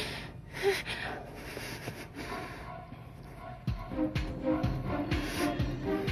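Background score music. In the first half there are short, sharp breaths, and about four seconds in a low pulsing beat comes in, roughly two thumps a second, under held tones.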